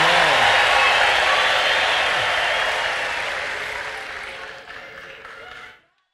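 A large congregation applauding and cheering, with a few shouted voices at the start. The noise fades over the last few seconds, then cuts off abruptly just before the end.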